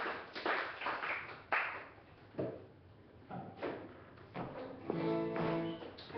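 Applause dying away over the first couple of seconds, then single acoustic guitar strings plucked one at a time and a chord left ringing near the end, as the guitar is checked and tuned between songs.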